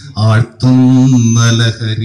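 A man's voice through a microphone, speaking in a drawn-out, chant-like cadence, holding one syllable for about a second.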